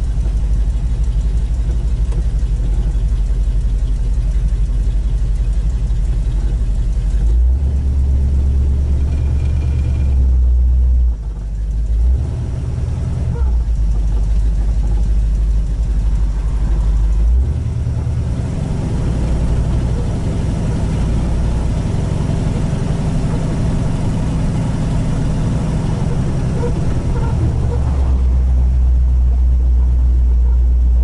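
1967 Chevy II Nova panel wagon's engine heard from inside the cabin, running with a deep, low rumble. It moves off slowly from a stop, and its note steps up and down several times as the throttle changes, picking up again near the end.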